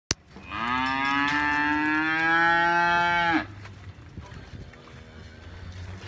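One long moo from a young black beast in a pen of cattle, lasting about three seconds, rising slightly in pitch and then breaking off abruptly.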